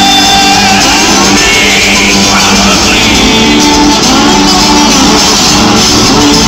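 Two acoustic guitars played live together, loud throughout, with a male voice holding a wordless sung note at the start.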